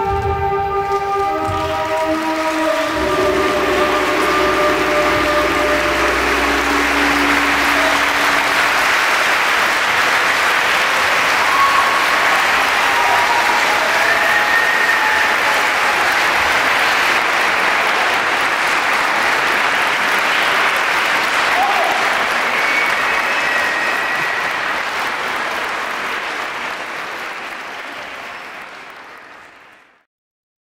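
Audience applause that swells as the closing music's long held notes fade over the first several seconds. The clapping holds steady, then dies away near the end.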